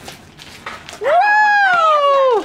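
A high-pitched "woo!" cheer starting about a second in, held for over a second and sliding slowly down in pitch.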